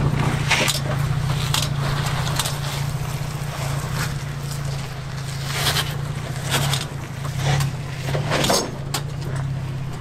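Toyota Tacoma's V6 engine running steadily at low revs as the truck crawls over rock, with a handful of short crunches and scrapes from the tyres on rock and gravel.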